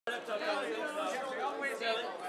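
Several people talking at once: overlapping voices chattering.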